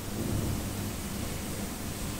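Steady background hiss with a low rumble underneath and no distinct event.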